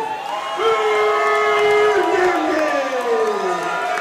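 Ring announcer drawing out a fighter's name in one long call: a held note, then a slow fall in pitch, over a cheering crowd.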